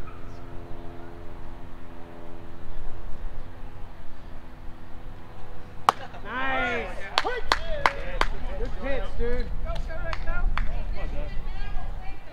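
A steady low hum fades out, then about halfway through a pitched baseball lands with one sharp smack. Shouting voices and a few sharp claps follow.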